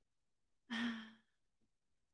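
A woman's short voiced sigh on one steady pitch, lasting under half a second, about a second in.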